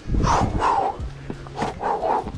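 A person breathing hard in quick huffs while scrambling up a rock face, with hands and shoes scuffing and thumping on the rock.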